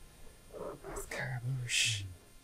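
A man's voice speaking softly, half under his breath, in a low murmur with a faint hiss near the end.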